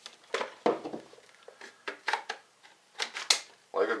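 Circle 10 AK-47 magazine being fitted into the rifle's magazine well: a series of sharp clicks and knocks of magazine on receiver, the loudest about three seconds in as it seats.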